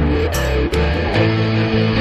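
Instrumental passage of a Greek rock song: guitars and bass playing sustained notes, with a few sharp hits.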